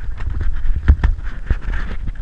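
An otter mouthing and pawing at a GoPro right at its microphone: a fast, irregular run of knocks, clicks and scrapes of teeth and claws on the camera housing, the sharpest knock just before the middle.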